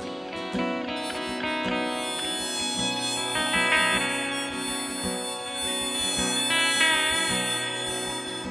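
Harmonica playing a melody in long held notes over strummed acoustic guitar and electric guitar.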